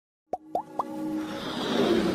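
Animated logo intro sound effects: three quick pops that each rise in pitch, about a quarter second apart, then a whoosh that swells steadily over a held musical tone.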